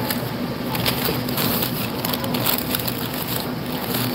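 Warehouse-store room tone: a steady low hum under a haze of noise, with scattered short crackles and rustles.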